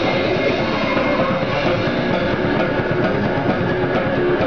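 Goregrind band playing flat out, the drum kit dominant: rapid, unbroken strokes on snare and cymbals with the band's full sound behind them.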